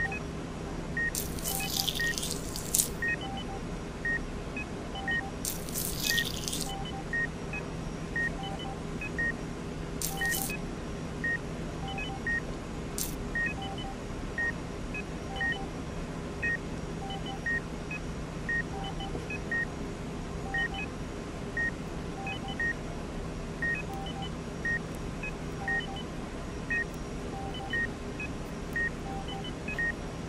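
Medical heart-monitor beeping, one steady beep repeating about every half second, over a low hum. A few short hissing bursts sound in the first dozen seconds.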